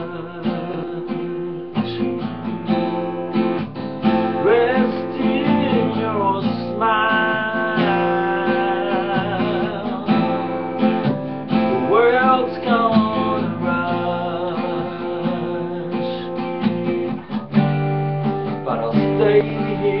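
Acoustic guitar strummed steadily, with a man singing over it in phrases.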